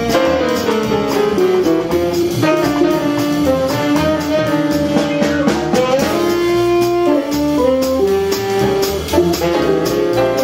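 A small jazz group playing: grand piano and plucked upright bass, with a saxophone holding the melody in long notes over a steady beat.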